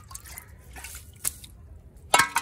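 Water dripping and splashing lightly in a metal bowl that has just been filled from a plastic drum: a few scattered drips, one sharper about a second in.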